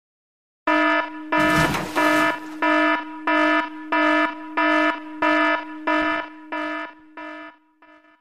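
Electronic alarm beep sound effect: a buzzy tone repeating evenly about one and a half times a second, around a dozen beeps, fading away near the end. A burst of noise sounds with the second and third beeps.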